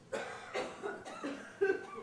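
A man coughing, a run of about five short coughs with the loudest near the end.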